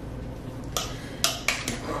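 Metal fork mashing boiled potatoes in a plastic mixing bowl, its tines clicking sharply against the bowl several times in the second half.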